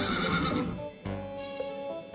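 A horse whinnies once in the first second, over background music with held notes that carries on after it.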